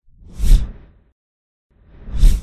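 Two deep whoosh sound effects for a logo animation, each swelling and fading within about a second. The first peaks about half a second in; the second begins near the end.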